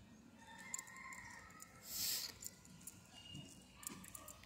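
A faint, drawn-out animal call with a wavering pitch, lasting about a second and a half, followed about two seconds in by a brief rustle.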